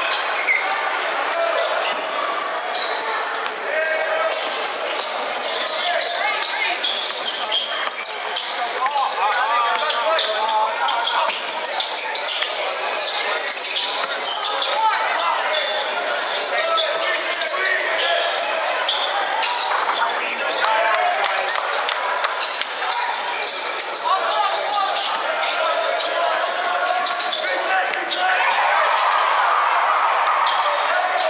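Basketball game sounds in a gymnasium: a ball bouncing on a hardwood court, over the talk of players and spectators, echoing in the large hall.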